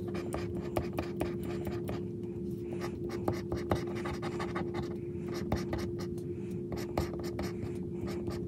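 Pink plastic scratcher tool scraping the coating off a paper scratch-off lottery ticket in many short, quick strokes, with a steady hum underneath.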